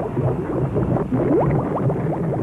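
Water bubbling and gurgling: a dense run of short, rising bloops over a low rumble.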